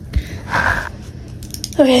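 Desk handling noise as a pen is picked up: a soft low thump, then a short scratchy rustle about half a second in.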